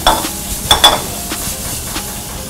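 Food sizzling in a hot metal pan on the stove, with a few sharp metallic clinks of pan and utensil, the loudest near the start and again just under a second in.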